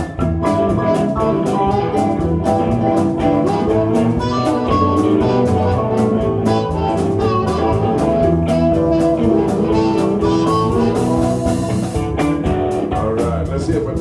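Live blues band playing an instrumental passage: electric guitars, bass and keyboard over drums keeping a steady beat on the cymbals, with a harmonica played cupped in the hands.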